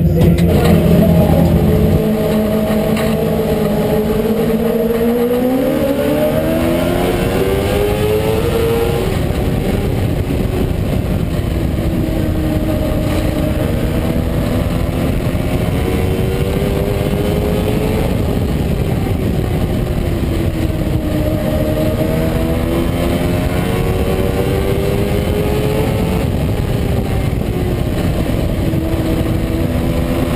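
Onboard sound of a small oval-track race car's engine under way: it pulls up through the revs about five seconds in, then keeps rising and falling every several seconds, lifting off and getting back on the throttle as it laps in traffic.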